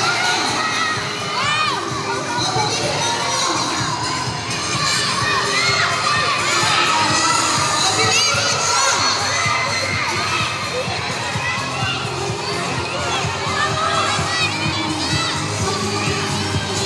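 A crowd of young children shouting and cheering without a break, many high voices overlapping.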